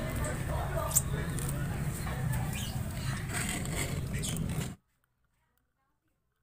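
Outdoor background noise with faint voices and a few sharp clicks, cutting off abruptly to near silence about five seconds in.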